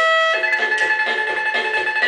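Children's electronic toy keyboard playing a built-in tune: thin synthetic tones, a held high note over a plucked-sounding accompaniment that pulses about three times a second.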